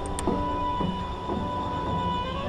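Drum corps brass playing held chords that move to a new note about every half second, over heavy wind rumble on the drum-mounted camera's microphone, with one sharp click just after the start.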